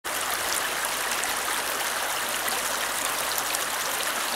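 Shallow stream running over rocks and gravel, a steady rushing babble.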